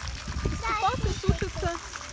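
High-pitched voices, a child's among them, talking through most of the moment, over a faint steady splash of a hose jet running into a pond.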